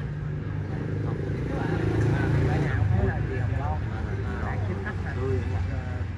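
Indistinct voices of people talking over a steady low hum, which grows a little louder about two seconds in.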